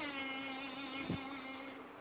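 A boy's voice holding one long sung note that slowly fades, with a soft low thump about a second in.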